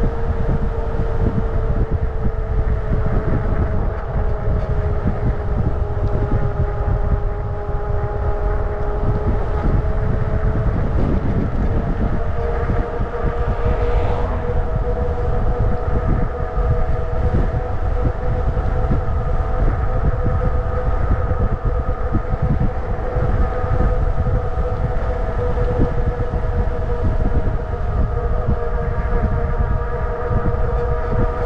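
Motorcycle engine running steadily at cruising speed, its pitch sagging slightly and then climbing again about twelve seconds in, over a low wind rumble on the microphone.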